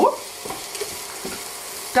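Orzo pasta, onion and garlic sizzling gently in butter in a pot while a spatula stirs and scrapes them around the bottom, a few soft scrapes standing out over the steady frying.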